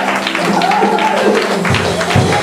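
Gospel worship music: several voices singing together over instruments, with a fast run of sharp claps or taps keeping the beat.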